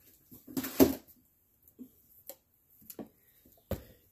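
Bottles being handled on a desk: a rustling clunk about a second in, a few faint clicks, and a sharp knock near the end as one is picked up or set down.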